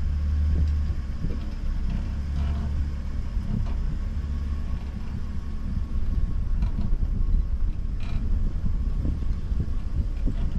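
Tow vehicle's engine running low and steady as it slowly moves the kayak trailer, with a few faint clicks over the rumble.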